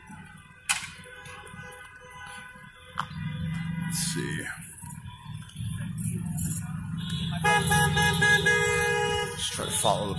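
Cars in a slow-moving line honking their horns: one horn held for about two seconds near the end, over the low rumble of the passing vehicles.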